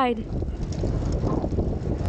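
Wind rushing over the microphone of a camera held low beside a loaded touring bicycle riding along an asphalt highway, a steady noise with the tyres' road noise underneath.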